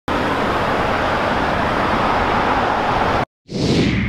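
A steady, even roar of traffic noise that cuts off abruptly about three seconds in, followed near the end by a title-card whoosh sound effect that falls in pitch.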